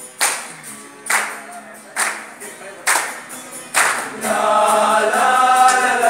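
Acoustic guitar strummed with hand claps in a slow, even beat, then a choir of young men's voices comes in singing about four seconds in.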